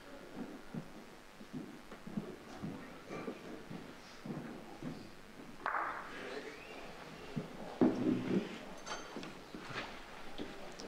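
Lawn bowls on an indoor carpet mat: an attacking delivery rolls up the mat and knocks into the bowls of the head, with a sharp clack about halfway through and further knocks and footsteps on the mat near the end.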